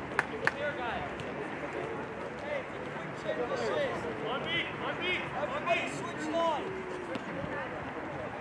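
Indistinct shouts and calls from several voices across an open soccer field, with the last two claps of a round of clapping in the first half second.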